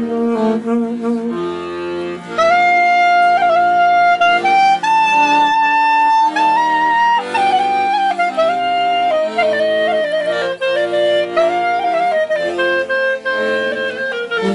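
A small band of clarinet, saxophone and accordion playing a slow tune. Held chords open it, and about two seconds in a loud reed melody of long held notes comes in over the accompaniment.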